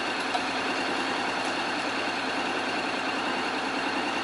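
Honda X-ADV's parallel-twin engine idling steadily.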